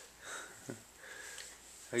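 A baby's faint sniffles and breaths just after a big sneeze, with a brief small sound from him about two-thirds of a second in.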